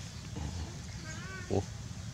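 A young animal makes a brief, high, wavering whimper, followed by a short, lower, louder cry about a second and a half in.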